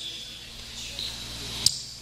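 A pause in speech with a steady low hum from the microphone line and one sharp click shortly before the next words.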